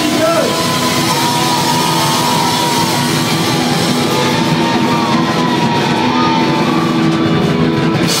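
Live rock band playing loud, with electric guitars, bass and drums, heard close to the stage.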